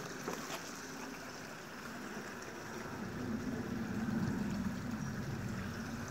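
Steady hiss of heavy rain falling, with a low rumble that swells a little in the second half.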